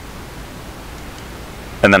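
Steady hiss of the recording's background noise in a pause between words; a voice starts speaking near the end.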